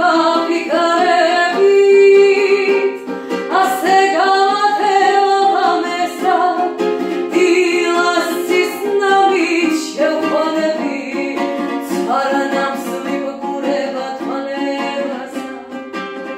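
A woman singing while strumming a ukulele, her sung phrases starting with notes that slide upward and then hold.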